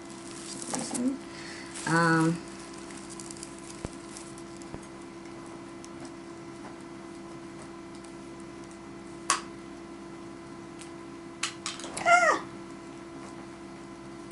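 A house cat meowing: a short wavering call about two seconds in and a falling meow near the end. A single sharp tap comes midway, over a faint steady hum.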